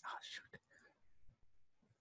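Near silence, with a faint, brief soft voice in the first half second.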